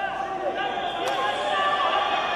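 Indistinct voices calling out and talking over one another, echoing in a large sports hall during a wrestling bout. There is one sharp slap or knock about a second in.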